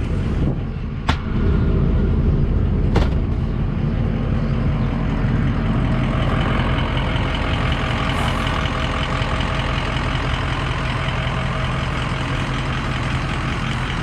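Ford 6.0 L turbo diesel idling steadily, with two sharp clacks from the cab about one and three seconds in.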